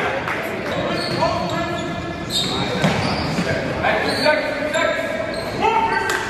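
Live basketball game sound in a gymnasium: a ball bouncing on the hardwood, short high squeaks of sneakers on the court, and indistinct voices in the echoing hall.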